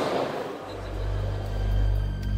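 Background music fades in about half a second in, as the hall noise dies away: low, sustained bass tones with a few faint steady higher notes above them.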